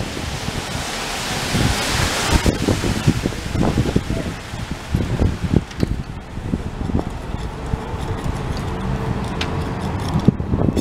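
Wind buffeting the microphone. A rush of hiss peaks in the first couple of seconds, then irregular low bumps follow.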